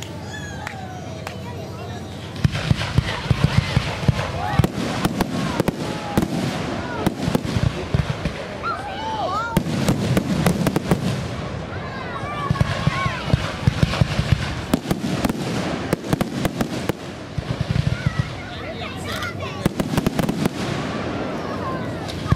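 Aerial fireworks display: rapid bangs and crackles of shells bursting, beginning about two seconds in and coming in clustered volleys with brief lulls.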